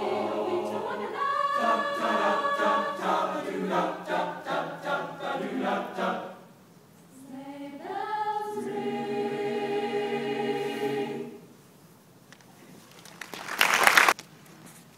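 Mixed high school choir singing a short rhythmic passage, then, after a brief pause, a final held chord that ends the song. Near the end comes a short, loud burst of noise.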